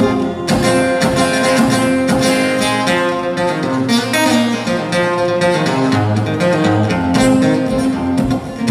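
Acoustic guitar strummed and picked in a solo instrumental passage, with ringing chords and repeated strokes.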